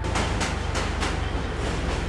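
Subway train passing at speed: a steady rushing rumble with a few sharp clacks in the first second.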